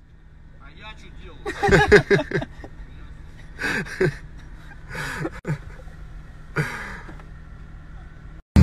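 Indistinct speech in about five short phrases over a steady low hum, heard from inside a car.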